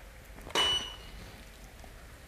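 A photo being taken: the Canon EOS R5's shutter and the studio flash firing give a single sharp click about half a second in, followed by a short, high, steady beep that lasts about half a second.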